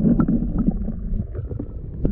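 Muffled underwater water noise picked up by a submerged camera: a steady low rumble of water against the camera, with a few faint ticks.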